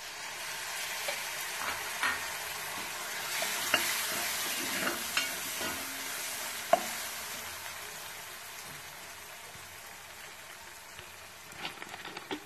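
Spice masala sizzling in hot oil in a black kadai while a steel spoon stirs it, with a few sharp clicks of the spoon against the pan. The sizzle is loudest in the first half and dies down toward the end.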